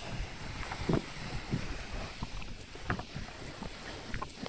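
Wind blowing across the microphone on a moving ship's open deck, over a steady low rumble, with a few footsteps on the deck.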